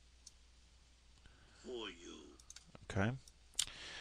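Computer mouse clicking a few times, with one sharp click about three and a half seconds in.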